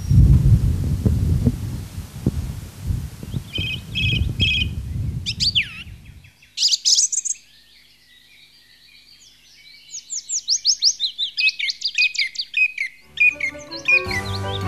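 A low outdoor rumble with a few short high chirps, then a songbird singing a quick run of high, sweeping notes from about eight seconds in. Music starts just before the end.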